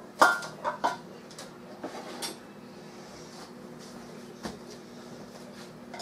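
A few light clinks and knocks of kitchenware on a cooking pot in the first two seconds or so, the first and loudest with a brief metallic ring, then one more knock about four and a half seconds in.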